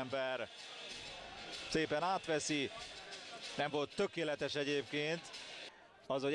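Men's voices calling out on a football pitch in three short spells, over a low background of stadium noise.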